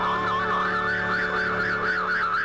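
Eerie electronic tone in a horror soundtrack, warbling rapidly up and down like a siren, about four swings a second, over a steady low drone.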